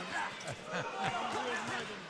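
Punches from padded boxing gloves thudding on an opponent in a flurry of short blows, with voices talking over them.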